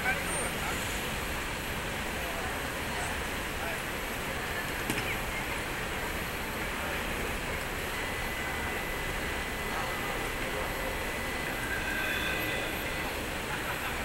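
Busy outdoor city ambience: a steady wash of traffic noise with scattered voices of passers-by. A faint high steady tone sounds for a few seconds in the second half.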